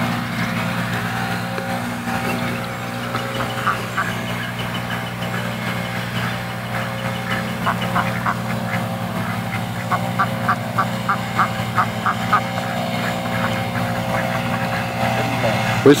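Golf cart motor running with a steady low hum throughout. Over it, ducks give short quacks, a few at first and then a quick run of about a dozen over two or three seconds.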